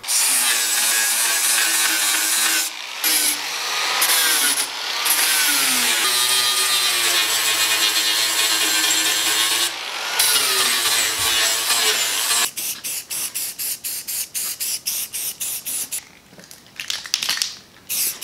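Angle grinder with a 120-grit flap disc grinding down welds on a steel fender. The motor's pitch sags and recovers as the disc is pressed in, and it drops out briefly a few times. About twelve seconds in the grinding stops, and a fast series of short strokes follows.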